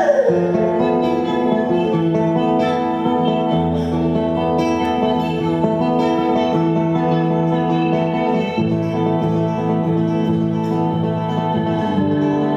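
A classical guitar played fingerstyle with a woman's voice singing over it without words, opening on the tail of a falling vocal glide.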